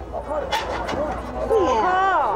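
Speech: a man calling out in a lively, up-and-down voice, over a steady low hum.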